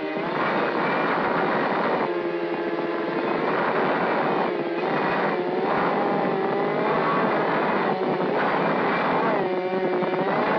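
Onboard audio of a mini quadcopter's four Emax RS2205 2300kv brushless motors and propellers whining in flight, the pitch swooping up and down repeatedly with throttle changes, over a steady rush of wind and prop wash.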